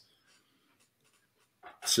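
Near silence for about a second and a half, then a man's voice begins near the end.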